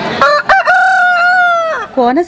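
A rooster crowing once: a short opening note, then a long held note that drops off at the end.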